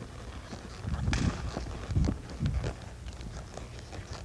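Hoofbeats of a horse spinning at speed on soft arena dirt: muffled thuds in an uneven rhythm, with one sharper click about a second in.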